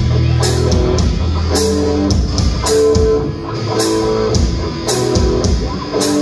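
Live rock band playing: electric guitars holding long notes over bass and drum kit, with a sharp drum hit about once a second.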